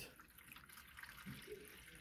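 Faint trickle of water being poured from a plastic bottle through a plastic funnel into an industrial steam iron's water tank.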